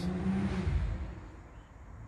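Low rumble of a passing vehicle, loudest in the first second and then fading.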